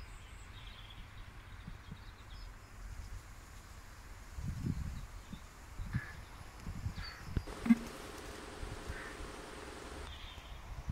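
Outdoor garden ambience with a few faint bird chirps and low rumbles on the microphone. A single sharp click, the loudest sound, comes about three-quarters of the way in, and a faint steady hum follows it.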